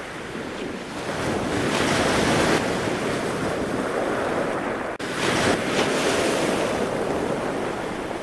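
Wind buffeting the microphone over rushing surf and sea water, a steady rushing noise with an abrupt cut about five seconds in.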